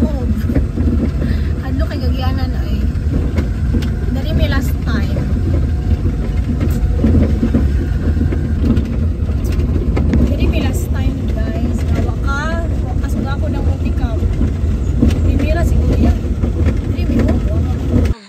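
Steady low engine and road rumble inside a small multicab utility vehicle driving on a rough gravel road, with voices talking faintly over it at times.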